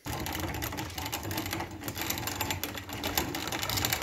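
Cast-metal hand grain mill grinding soaked white maize coarsely, a steady dense crunching clatter of kernels being cracked between the grinding plates.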